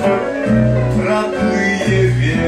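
Live band music led by guitar, with a bass line that changes note about every half second under held melody notes.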